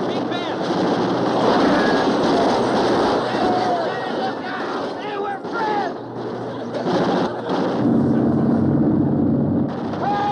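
Deck-mounted machine guns firing in rapid continuous bursts, with shouting voices over the fire. A steady droning tone takes over in the last couple of seconds.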